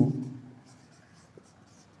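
Marker pen writing on a whiteboard: faint strokes, following a man's word that trails off at the start.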